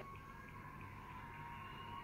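Faint steady background with a few high held tones and no speech.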